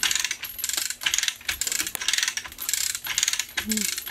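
Manual chain hoist lifting a heavy load: the steel chain rattles and the ratchet clicks in quick bursts as the hand chain is pulled hand over hand, a few bursts each second.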